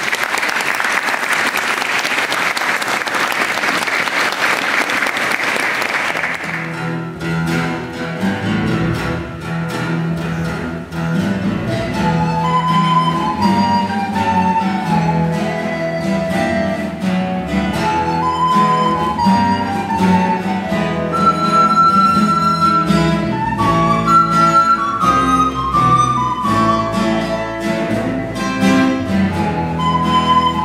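Applause for about the first seven seconds, then a folk band's instrumental passage: strummed acoustic guitars and a double bass under a recorder melody.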